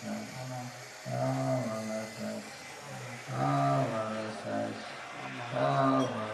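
A low voice in a live vocal performance, drawing out long held tones about a second each, three times with short gaps between.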